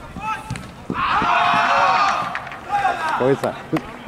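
Voices shouting on a football pitch, loudest in a long drawn-out shout about a second in. A few sharp thuds, typical of a football being kicked, come in the second half.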